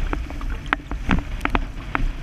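Wind buffeting a boom-mounted GoPro's microphone in a steady low rumble, with many irregular sharp ticks and slaps of water spray and chop against the windsurf board and camera.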